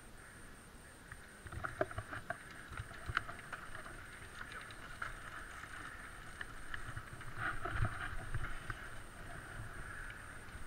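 Downhill mountain bike rolling off over loose gravel and onto tarmac: tyres crunching on the stones and the bike rattling, with a run of scattered clicks and knocks starting about a second in and busiest near the end.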